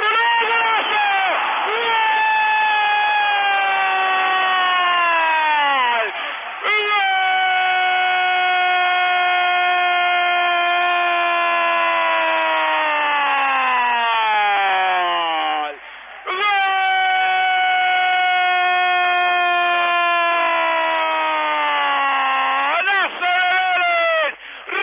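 Football commentator's drawn-out goal cry, 'gooool', held in three long breaths, each sliding slowly down in pitch, with short pauses for breath between them; it marks a goal just scored.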